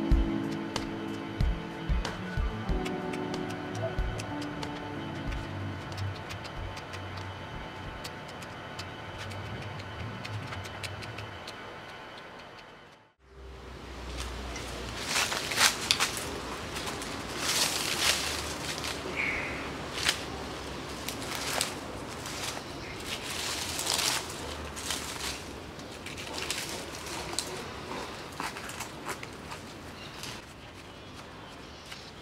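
Soft background music that fades out about a third of the way in. After a brief hush comes irregular rustling and crackling from hands working soil and dry fallen leaves around a small plant pot.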